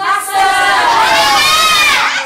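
A group of children shouting together, many high voices at once, starting suddenly and staying loud.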